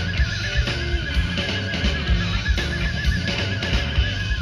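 Live rock band playing through a stage PA: drums and bass under a long held high note that wavers in pitch.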